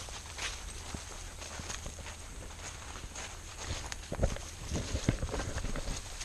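Footsteps walking on a mowed grass path over a steady low rumble. The steps become heavier and more frequent in the last two seconds.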